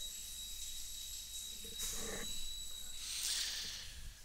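Steady electrical hum and hiss from the microphone line, with a thin high whine held underneath. Two short, soft noisy puffs come about two and three seconds in.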